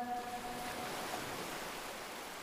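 The last held note of a chanted Quran recitation dies away in reverberation within the first second, leaving a steady soft hiss.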